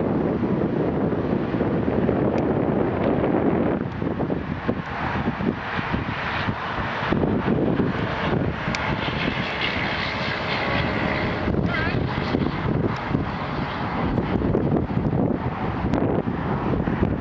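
Steady rumble of road traffic, including a passing semi-truck, with wind buffeting the microphone. The rumble is heaviest for the first few seconds, then thins into a broader hiss.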